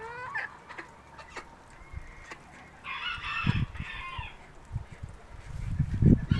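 Backyard chickens clucking while feeding, with a short rising call at the start and a rooster crowing for about a second around three seconds in. A few low thumps come near the end.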